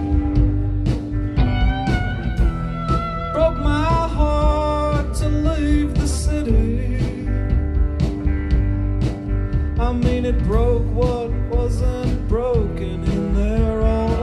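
A live rock band playing: a man singing over electric guitar and a drum kit.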